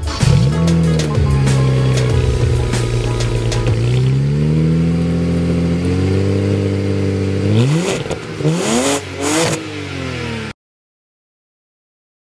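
2007 BMW 335i's twin-turbo inline-six on the stock exhaust, starting just after the beginning and idling high before settling lower. It is then revved in three quick blips, and the sound cuts off suddenly near the end.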